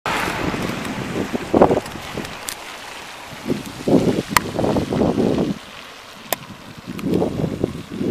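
Wind buffeting the phone's microphone in uneven gusts, with a few sharp clicks.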